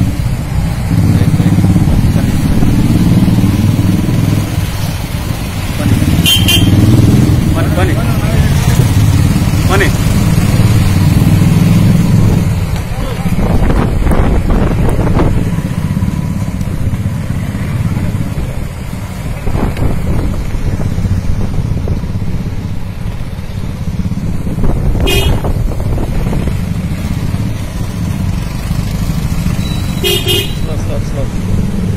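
A group of motorcycles riding slowly together, their engines running with a steady low rumble that is heaviest in roughly the first twelve seconds. Short horn toots sound about six seconds in, again near twenty-five seconds and at the very end.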